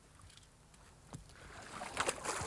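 Faint splashing of a hooked brown trout thrashing at the river surface as the wading angler reaches down to land it. It grows louder near the end, with a single click about a second in.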